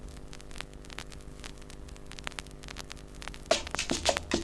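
Lead-in groove between tracks on a vinyl LP: a steady electrical hum with scattered clicks of surface noise. The percussion of the next track starts near the end.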